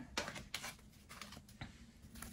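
Faint handling noises of a deck of oracle cards being picked up: a few soft taps and rustles against quiet room tone.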